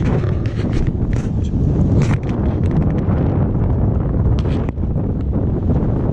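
Wind buffeting the microphone of a camera mounted on a moving recumbent trike: a steady low rumble with scattered light clicks.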